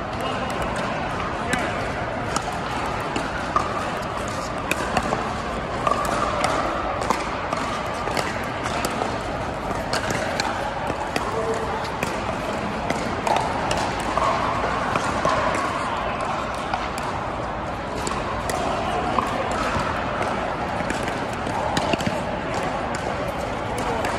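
Pickleball paddles striking a hard plastic ball, many short sharp pops scattered through, some from the rally at hand and others from neighbouring courts, over a steady background of many people's voices.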